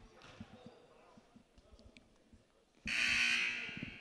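A gym scoreboard horn sounding once, a loud buzzy blast of about a second near the end, dying away in the hall's echo. Before it there are only faint court sounds.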